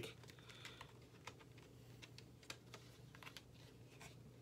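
Faint, irregular clicks and taps of a plastic DVD case and its hinged disc trays being handled, over near-silent room tone.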